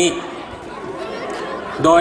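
A pause in a man's amplified speech, filled by steady hall noise with faint background chatter; his voice comes back near the end.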